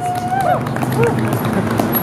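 Voices of a group of people, with one drawn-out higher voice near the start, over steady outdoor background noise.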